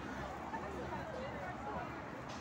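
Indistinct chatter of several people talking over one another, with steady outdoor street noise underneath.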